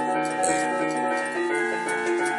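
Electronic keyboard playing sustained chords with an organ-like tone, moving to a new chord about one and a half seconds in.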